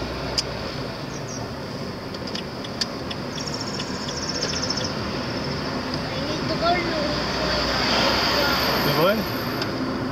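Steady road and engine noise heard from inside a moving car, growing louder in the later seconds as oncoming traffic passes close by.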